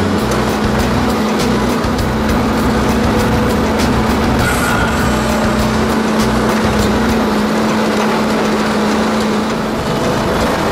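Volvo EC210B LC excavator running, its diesel engine and hydraulics at a steady hum, while the Xcentric XR20 ripper attachment breaks and scrapes lava stone, with scattered sharp knocks of rock.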